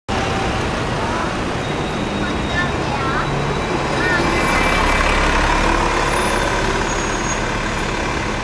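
City street traffic noise, starting abruptly: a double-decker bus running close by over a steady rumble of traffic, with faint voices of people.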